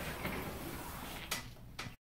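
Quiet room noise with two short clicks or knocks, about a second and a half apart near the end, then the sound cuts off abruptly.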